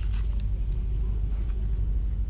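Steady low rumble with a few faint clicks.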